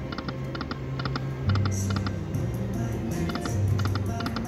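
Lightning Link Best Bet slot machine spinning: clusters of quick clicking ticks from the reels over the machine's low, stepping music.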